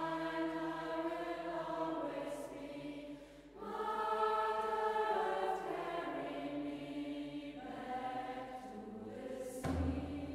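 Recorder ensemble playing slow, sustained chords with a choir-like sound, briefly pausing about three seconds in. A low drum starts beating near the end.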